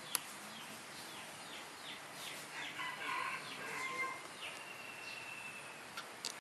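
A rooster crowing, faint, a little over two and a half seconds in, over short falling bird chirps repeated a few times a second. A sharp click just after the start, and a steady high note near the end.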